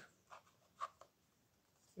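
Faint handling sounds: three light ticks and scrapes in the first half as a 2.5-inch SATA SSD is handled against a plastic hard-drive enclosure, being lined up with its SATA connector.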